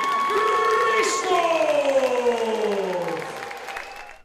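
A ring announcer's long, drawn-out call announcing the winner: one voice held on a high note, then sliding slowly down and fading out, over crowd applause.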